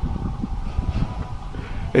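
Low, uneven outdoor rumble on a handheld phone microphone, with no clear event standing out.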